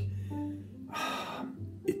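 A man's audible breath out, a soft sigh-like exhale about a second in, over a steady low hum.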